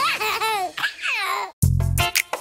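A small child laughing, a run of giggles that fall in pitch, then a brief cut to silence. About a second and a half in, an upbeat song starts with a bass line and a steady beat.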